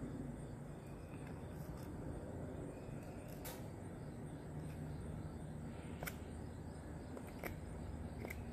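Knife cutting into wood as the notch of a hand-drill hearth board is trimmed: a few faint, sharp clicks spaced a couple of seconds apart over a low steady hum.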